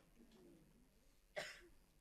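Near silence, broken about one and a half seconds in by a single short cough.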